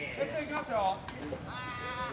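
Indistinct shouted calls of players across a baseball field: a falling call about half a second in and one long held call near the end.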